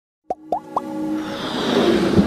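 Intro sound effects for a logo animation: three quick pops, each gliding upward in pitch, about a third, half and three-quarters of a second in, followed by a musical swell of held tones that grows steadily louder.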